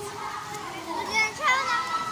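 Children shouting and calling out as they play, with two loud high-pitched shrieks a little after a second in, over a hubbub of other voices.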